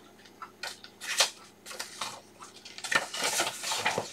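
Folded paper booklet being handled and its pages turned: a few short, separate crinkles, then a denser stretch of paper rustling near the end.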